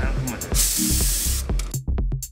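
Industrial steam iron letting out a loud burst of steam hiss lasting about a second, starting about half a second in, over background music with a steady beat.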